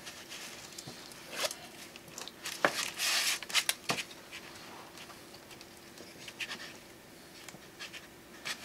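Curling ribbon drawn across an open scissor blade to curl it, with a short scraping zip about three seconds in, amid small rustles and clicks of ribbon and scissors being handled.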